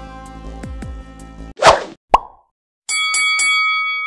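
Electronic dance music with falling bass sweeps cuts out about one and a half seconds in. A loud whoosh and a plop-like hit follow, then a short silence. Near the end comes a ringing sound effect of several steady tones: the stinger for a countdown card.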